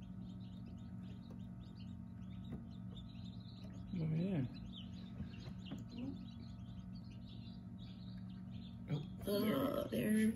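Newly hatched chicks peeping in a chorus of short, high chirps over a steady low hum. A low vocal sound rises and falls about four seconds in, and a louder stretch of voice comes near the end.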